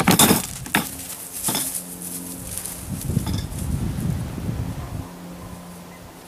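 Wire animal cage clinking and rattling as it is opened and a red fox scrambles out: a few sharp metallic clanks in the first second and a half, then softer handling and rustling noise over a faint steady low hum.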